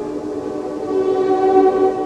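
Opera orchestra holding sustained chords, several pitches sounding at once and shifting slowly.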